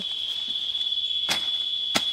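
Insects buzzing in a steady, high-pitched drone, with two sharp clicks, one just past a second in and one at the end.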